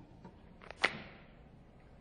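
A single sharp snap or knock a little under a second in, preceded by a fainter click, over a quiet background.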